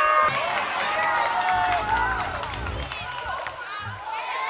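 Several voices calling and shouting over one another on a football pitch, with a few sharp knocks among them. A steady held tone cuts off just after the start.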